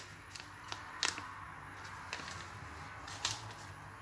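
A handful of faint, sharp clicks and taps as dried seasoning is added to a bowl of flour, the clearest about a second in and again a little after three seconds, over a low room hum.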